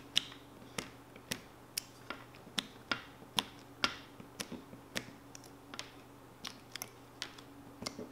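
Light, irregular clicks and taps, two or three a second, from an X-Acto knife tip picking the small screw-hole cutouts out of a wet chassis skin wrap against the table.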